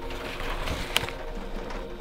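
Pages of a spiral-bound photo scrapbook being handled and turned: a paper rustle with one sharp click about a second in.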